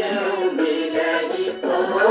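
A Hindu devotional song playing from an old 45 rpm Gramophone Company of India record: singing over instrumental accompaniment, with a dull, muffled top end.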